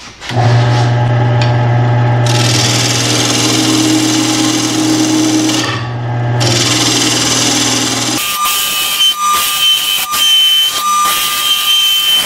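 Wood lathe running while a gouge cuts a spinning mesquite blank, a steady hum under the scraping of the tool. About eight seconds in the sound changes abruptly: the hum drops out, and a higher steady whine comes in with uneven scraping and ticking of the cut.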